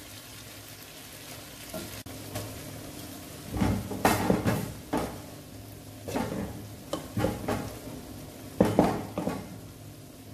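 Cooked rice being tipped into a frying pan of stir-fried vegetables, shrimp and sausage and worked in with a wooden spatula. It comes as several short scraping, rustling bursts, the biggest about four seconds in, over a low steady background.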